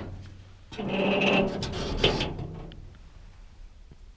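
A wooden board scraping against the tractor's sheet-metal bonnet for about a second and a half, ending in a sharp knock.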